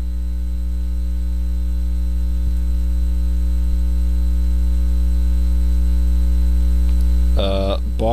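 Loud, steady electrical mains hum with a ladder of evenly spaced overtones, carried in the audio line of the corded microphone.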